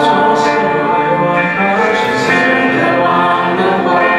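A group of voices singing a Mandarin Christian worship song, holding sustained notes over steady musical accompaniment.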